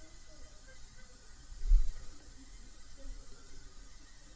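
Quiet room tone with a faint hiss and one dull, low thump a little under two seconds in.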